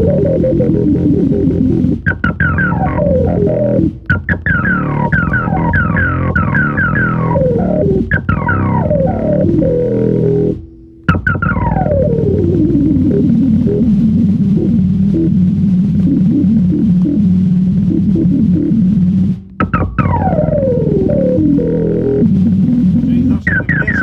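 Keyboard synthesizer improvisation: runs of quick falling pitch sweeps over a low sustained drone, broken by a few short pauses. In the middle, one long sweep glides down and settles onto a held low note for several seconds.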